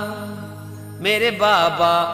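Sai Baba devotional song: the accompaniment holds a soft sustained note for about a second, then the sung vocal line comes back in.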